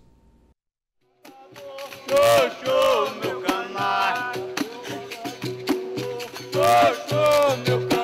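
Capoeira roda music starting about a second in after a brief silence: a voice singing over a berimbau and an atabaque drum, with a shaken rattle clicking throughout.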